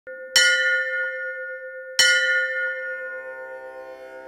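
A bell struck twice, about one and a half seconds apart, each strike ringing on and slowly fading.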